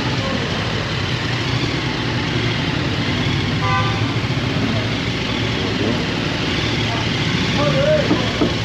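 Motorcycle engine running at walking pace, a steady low engine note, with a short beep about halfway through.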